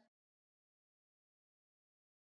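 Silence: the sound track is blank, with no room tone.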